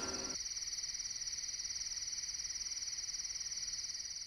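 Crickets chirping in a steady, high, rapidly pulsing trill, as night ambience. The tail of a music cue dies away in the first moment.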